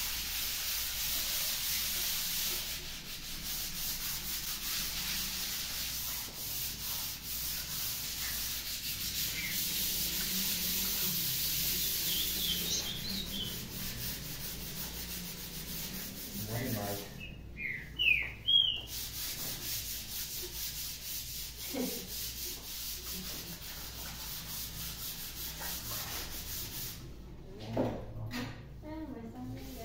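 Two people sanding walls by hand with sandpaper: a steady scratchy rubbing hiss, loudest for the first dozen seconds and fainter after. A few short high chirps come around the middle.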